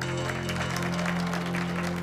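Audience applauding while the backing music holds a steady chord at the end of a song.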